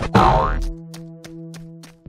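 A cartoon boing sound effect, a quick rising glide, lands just after the start over background music. The music carries on with steady held notes and an even ticking beat, then fades out near the end.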